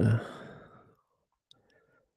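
A man's drawn-out spoken word trailing off into an exhaled breath. After that there is near silence, with one faint click about one and a half seconds in.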